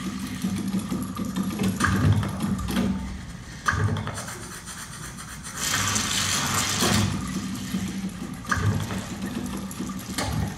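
The soundtrack of a video artwork played into a gallery room: a low mechanical hum with low thumps and a few sharp knocks. About six seconds in comes a hiss lasting a little over a second as salt pours from a shaker.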